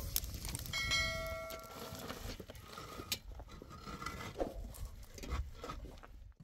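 A metal cooking pot gives a brief bell-like ring about a second in, among scattered clicks and knocks.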